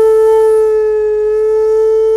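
Solo shakuhachi (Japanese end-blown bamboo flute) holding one long, steady note, with breathy air noise over the tone.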